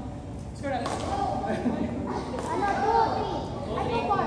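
Children's voices and chatter carrying through a large, echoing sports hall. There are a few faint sharp knocks, such as shuttlecock hits.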